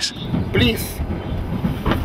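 Steady low rumble of a passenger train carriage running, heard from inside a sleeper compartment, with brief passenger voices and a sharp click near the end.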